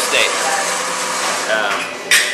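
Brief fragments of a man's speech over a steady background hiss.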